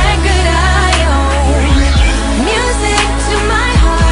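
Dance-pop song with a female lead vocal singing over a synth beat with heavy bass and steady drum hits.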